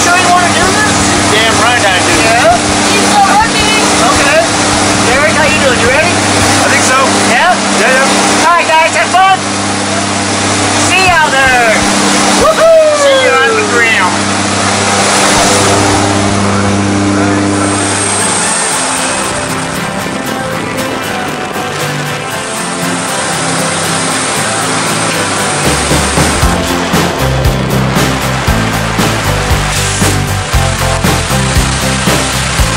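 Steady drone of a skydiving plane's engine in the cabin, with voices calling over it. Music with a beat comes in near the end.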